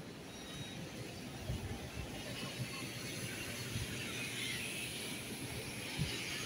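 Ride-on floor scrubber running with a steady mechanical hiss, growing louder in the last couple of seconds as it comes close.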